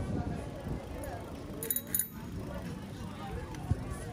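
Outdoor street ambience of passers-by talking over a steady low rumble, with a few short metallic clinks a little under two seconds in.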